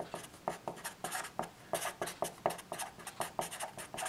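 Sharpie felt-tip marker writing on a sheet of paper: a quick string of short, irregular strokes.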